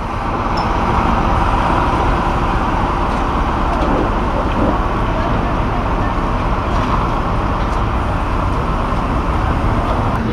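Recovery truck's engine running steadily while its hydraulic crane lowers a wrecked banger car, a continuous mechanical drone with a low rumble.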